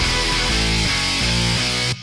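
Intro music: loud rock with distorted guitar and a steady beat, cutting off right at the end.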